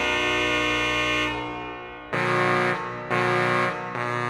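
Electronic organ played through loudspeakers. A held full chord dies away about a second and a half in, followed by two short, loud detached chords.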